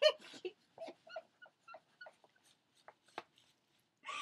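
A series of short, high-pitched whimpering squeaks, one louder at the start and then faint ones every fraction of a second.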